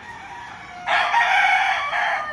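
A gamecock rooster crowing: one long crow that starts about a second in, after a quieter moment.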